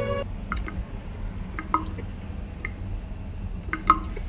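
A man chewing a mouthful of toasted Italian sub close to a lapel microphone: scattered wet mouth clicks and smacks over a low steady hum.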